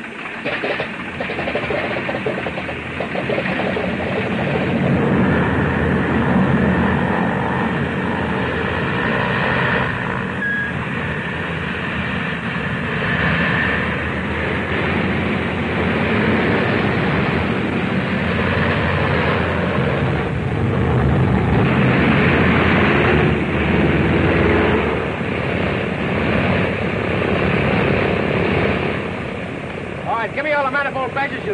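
Propeller aircraft engines running for takeoff, building up over the first few seconds and staying loud with slow swells, easing somewhat near the end.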